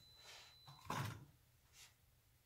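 Faint handling sounds of an EPO foam wing half: light rustling, then a soft knock about a second in as it is set down on the cloth-covered table, and a brief rub near the end.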